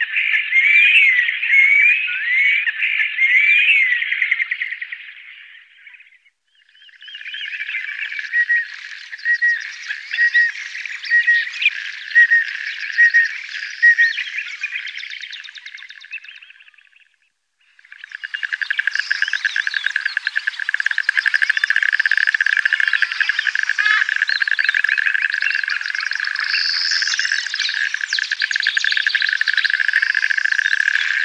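White-headed duck calls in three short marsh recordings with brief gaps between them. The first holds quick gliding calls; the second a series of short notes about once a second. A dense, steady pulsing chorus fills the last twelve seconds.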